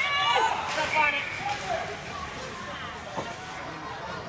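Several voices shouting and calling at an ice hockey game, loudest in about the first second and quieter after, with a single sharp knock a little after three seconds in.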